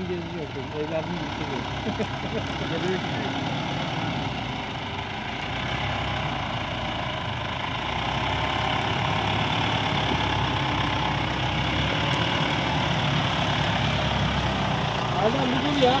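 Ford Ranger pickup's engine running as the truck drives slowly through deep mud ruts, getting louder as it comes close.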